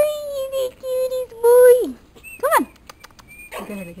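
High-pitched drawn-out vocal calls, two long held notes followed by a short yelp that rises and falls, about two and a half seconds in.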